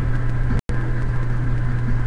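A steady low hum over constant hiss, with no change in pitch; the sound cuts out completely for an instant a little past half a second in.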